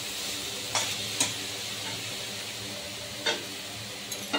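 Leafy greens (saag) sizzling steadily in a steel kadai over a gas burner, with three short taps of a steel spatula against the pan, about a second in and again near the end.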